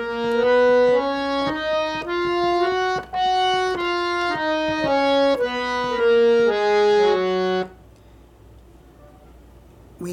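Harmonium playing the F-sharp major scale one note at a time, about two notes a second, climbing and then coming back down. It stops about three-quarters of the way in.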